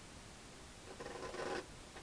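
Painting knife scraping across wet oil paint on canvas in one short stroke about a second in, cutting a clean edge on a painted shed.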